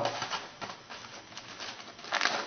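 Aluminum foil crinkling as it is handled, faint and irregular.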